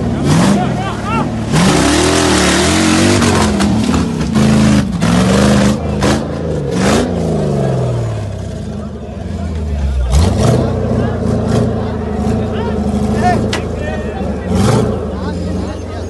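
Off-road vehicle engine revving hard in repeated bursts, its pitch swinging up and down, with a loud rushing noise for a couple of seconds near the start. After a lull it revs again twice, a little after ten seconds and near the end.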